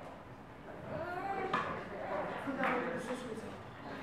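Low, quiet voices talking in a large room, with a couple of light knocks or clicks.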